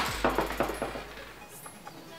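Dropped eyeshadows clattering and settling: a quick run of small hard clicks that thins out and dies away over about a second and a half.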